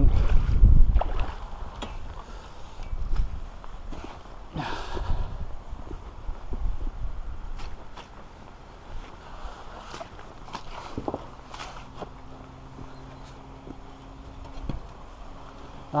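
Footsteps in wellington boots, stepping along stones at the edge of shallow floodwater, with scattered knocks and light splashes. A loud low rumble runs through the first second or two, and a low steady hum comes in for the last few seconds.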